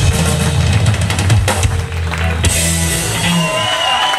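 A live electric blues band with several electric guitars, a keyboard and a drum kit playing the last bars of a song, closing on a held chord that stops about three seconds in. Voices and cheering start near the end.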